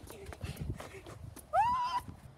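Light clicks and rustles of handling, then about a second and a half in a child's high-pitched squeal that rises and holds.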